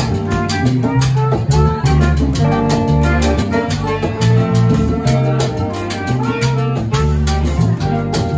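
Live salsa band playing, with congas and drum kit keeping a steady, busy rhythm over bass and electric guitar.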